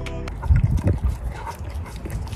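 A border collie pushing its snout into a rubber basket muzzle held in a hand: irregular soft bumps and rustles, loudest about half a second to a second in.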